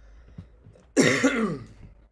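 A man clears his throat with one loud, short cough about halfway through.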